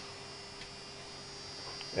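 Steady electrical hum with a thin high-pitched whine above it, from a running home-built transistor oscillator rig and the small DC motor it drives.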